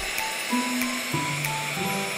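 Instrumental break in a children's song, with the bass dropped out and a few held notes, over a steady rushing-air sound of a leaf blower blowing.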